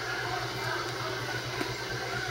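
Steady low background hum in a small room, with faint handling of a stack of trading cards and one light tick about one and a half seconds in.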